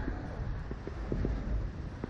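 Rushing air buffeting a microphone on a swinging Slingshot ride capsule: a heavy, steady low rumble of wind noise, with a few faint knocks.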